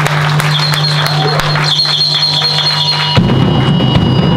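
Live rock band on electric guitar and drum kit: a steady low held note with a high ringing tone over it, then the full band with drums coming in a little after three seconds in, louder.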